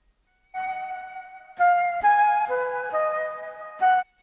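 Synthesized flute melody from the ANA2 'Gem Flute' patch: several sustained notes that begin about half a second in and cut off just before the end. The flute carries a subtle high-shelf boost on its side channel that brings up the breathy high end.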